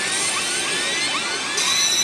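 Pachislot FAIRY TAIL machine's effect sound: a loud rushing build-up with repeated rising sweeps that steps up to higher ringing tones near the end, the lead-in to its Lucky Pato presentation.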